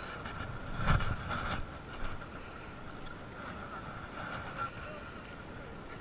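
Steady low rumble of wind on the microphone, with a short louder scuffing burst about a second in.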